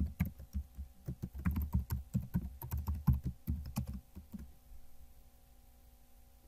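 Typing on a computer keyboard: a quick run of key presses lasting about four seconds, then stopping.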